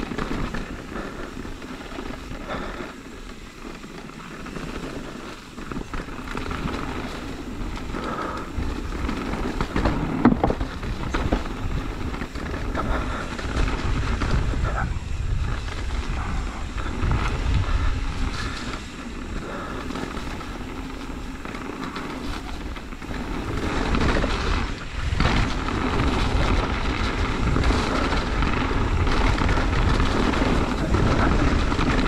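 Mountain bike riding fast down a dirt trail: a steady rumble of tyres over dirt with wind buffeting the camera microphone and occasional knocks from bumps, louder in the last several seconds.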